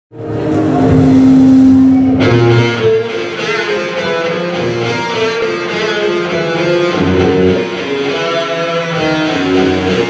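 Electric guitar played live through a Marshall amplifier: one long held note for about two seconds, then a run of single notes.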